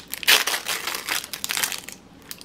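Crinkly plastic wrapper of a small toy packet crinkling and crackling as hands twist and pull it open, a dense run of crackles loudest just after the start.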